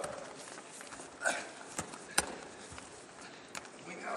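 Wrestlers moving against each other on a mat: scattered short knocks and scuffs of bodies and feet, with one sharp click a little after two seconds.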